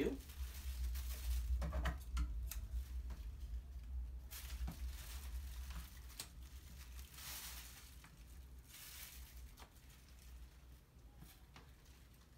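Thin plastic shopping-bag pieces crinkling and rustling in intermittent spells, with a few light clicks, as they are sorted through by hand, growing quieter toward the end. A low steady hum runs underneath.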